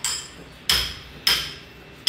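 Sharp knocks like hammer blows in a steady rhythm, a little under two a second, each dying away quickly.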